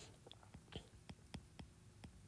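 Near silence with several faint, irregular taps of a stylus on a tablet's glass screen during handwriting.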